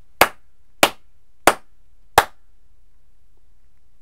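A man clapping his hands four times, slowly and evenly, about two-thirds of a second apart, acting out the lone applause he heard.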